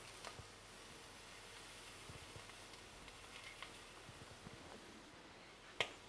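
Faint, steady sizzle of langoustine tails frying in a hot steel pan, with a few light clicks, the sharpest near the end. The sizzle is soft: the cook judges that the pan could have been a little hotter.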